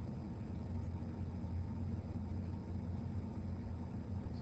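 Steady low background hum of room tone with no other events.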